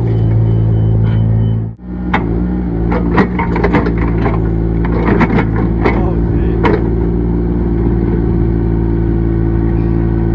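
Small excavator engine running steadily while its bucket digs in the pit, with several sharp knocks and clanks between about two and seven seconds in. The sound drops out briefly just before two seconds in, then the engine picks up again at a slightly different pitch.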